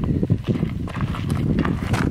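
Footsteps of several people walking on a gravelly dirt trail, close by, in an irregular patter of several steps a second.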